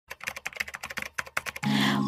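Rapid, irregular clicking like keyboard typing, with music setting in near the end.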